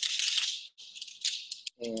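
Metal climbing hardware, carabiners and a Hitch Climber pulley, jangling and clinking together as they are handled on a harness. The jangle is strongest in the first half, then breaks into a few shorter clinks.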